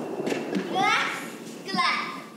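A child's voice calling out, its pitch sweeping sharply upward about a second in, with a second short call near the end.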